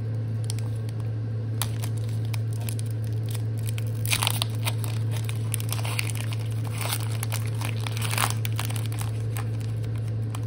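Foil booster-pack wrapper being torn open and crinkled by hand, crackling in short bursts that are loudest about four seconds in and again from about six to eight seconds in. A steady low hum runs underneath.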